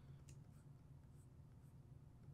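Near silence: room tone with a steady low hum and a faint click or two.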